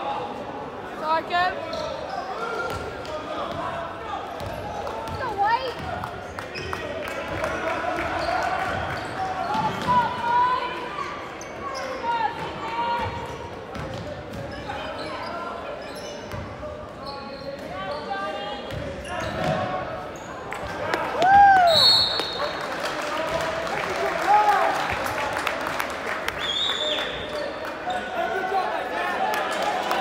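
Basketball game in a gymnasium: a ball bouncing on the hardwood court among scattered impacts and short squeals, over steady crowd chatter.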